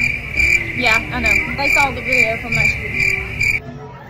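Insects chirping in a steady high pulsing chirp, about three pulses a second, that stops shortly before the end; faint voices underneath.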